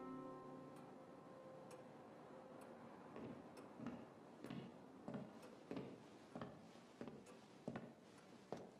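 Soft, sad instrumental music fading out in the first second, then a near-silent room with faint, regular ticks about once a second. From about three seconds in come soft, uneven steps as someone walks in.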